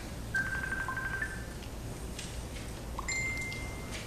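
A few short, steady electronic beeps at different pitches over a low room hum: a beep lasting about a second, a brief lower one right after it, and a higher beep from about three seconds in until near the end.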